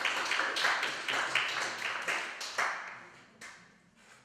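Audience applause dying away: dense clapping for the first two and a half seconds, thinning to a few last claps and fading out by about three and a half seconds in.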